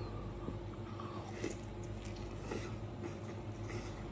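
Faint biting and chewing of a crispy, double-fried breadcrumb-coated chicken cutlet, with a few small crunches scattered through the chewing.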